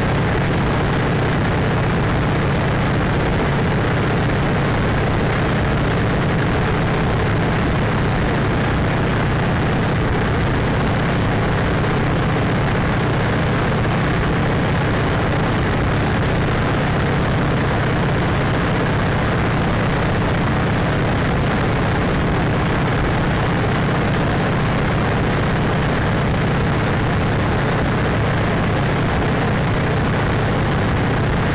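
Open-cockpit biplane's engine and propeller running steadily in cruising flight, with a low drone under an even rush of air, heard from a camera mounted on the airframe.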